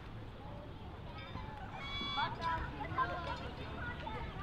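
Distant people's voices, faint and several at once, over open-air background noise.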